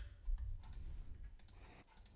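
A few faint clicks from a computer keyboard and mouse.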